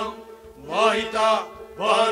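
Male voice singing a Kashmiri Sufi kalam over a harmonium's held notes, one sung phrase starting about two-thirds of a second in and another near the end.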